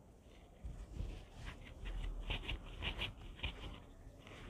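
Fabric being handled on a cutting table: irregular soft rustles and light taps, several a second, starting about a second in.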